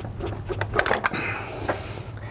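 Camshaft bearing caps being lifted off an Audi 2.7-litre bi-turbo V6 cylinder head by hand: several light metallic clicks and knocks in the first second, then a soft steady hiss.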